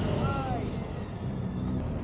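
Motorcycle engine running as the bike rides past close by at low speed.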